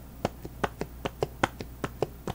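Stream Deck's concave plastic keys pressed over and over, a soft popping click about five times a second.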